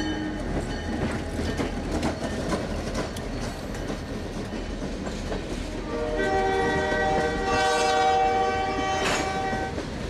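Freight train of tank cars rolling past, with steady wheel rumble and clickety-clack. A locomotive's multi-note air horn ends just after the start, then sounds again about six seconds in and holds for nearly four seconds before stopping shortly before the end.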